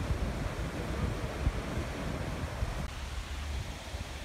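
Wind buffeting the microphone: an uneven low rumble with a steady outdoor hiss beneath it.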